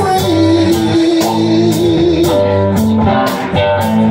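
Live blues-rock band: a Strat-style electric guitar plays a line with one long held, slightly wavering note, over Nord Electro keyboard chords and drums with steady cymbal hits.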